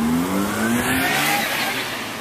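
A Mazda RX-8 accelerating past, its engine note rising steadily in pitch as it gains revs.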